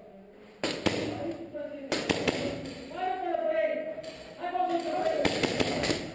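Several sharp cracks of airsoft guns firing in an exchange, with players' voices shouting between the shots.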